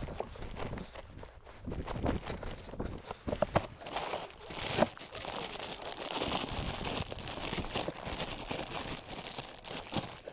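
Plastic bag crinkling and rustling as gloved hands open and handle a bag of raw meat and bones, the crinkling continuous through the second half. Footsteps crunch on dry grass in the first few seconds.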